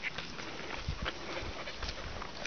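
Footsteps of a person in flip-flops and a pack of leashed dogs setting off on a dirt path: scattered light steps and scuffs, with a few soft thumps about a second in.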